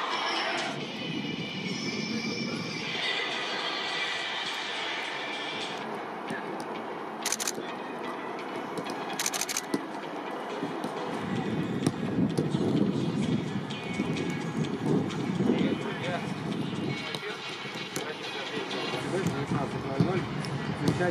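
Indistinct voices with music underneath, and a few short sharp knocks in the second half.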